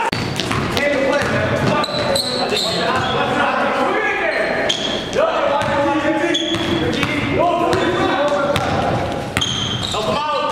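Basketball game sound in a gym hall: a ball dribbling and bouncing on the hardwood floor, sneakers giving short high squeaks, and players' voices calling out.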